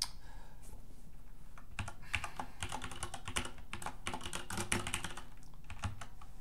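Typing on a computer keyboard: a quick, uneven run of key clicks from about two seconds in to about five seconds in, with a single click at the start and another just before the end.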